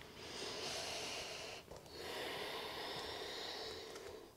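A woman's deep breathing: two long, audible breaths, the first about a second and a half, the second about two seconds, with a short pause between them.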